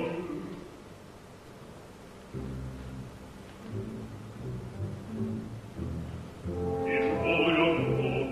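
Opera: a sung bass phrase dies away at the start. After a short hush, low orchestral notes move in short steps, and the bass voice comes back in near the end.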